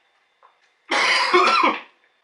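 A man coughing: one harsh burst lasting nearly a second, starting about a second in.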